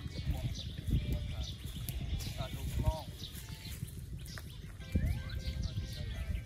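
Low voices of a small outdoor group, with a few words about two and a half seconds in, over an uneven low rumbling noise and scattered short high bird chirps.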